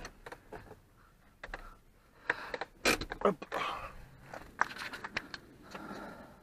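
Scattered clicks, knocks and rustling of someone moving about inside a Peugeot 206: the handbrake being released and the person getting out of the car.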